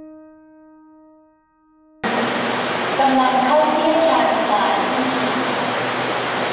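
Piano music fades out, then cuts suddenly about two seconds in to the steady rushing noise of an SRT Red Line electric commuter train pulling into the platform, with a voice speaking over it.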